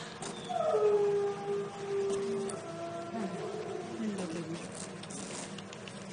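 A dog howling and whining in long drawn-out notes, some of them sliding down in pitch. The sound is loudest about a second in and fades to quieter whines after about three and a half seconds.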